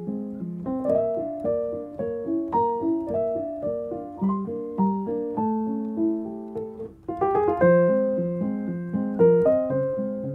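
Background piano music: a steady run of notes and chords, dipping briefly about two-thirds of the way in, then coming back fuller and louder.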